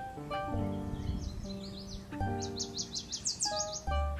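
Instrumental background music, with a bird singing over it from about a second in: a run of high, sweeping notes that speeds up to about six a second and stops just before the end.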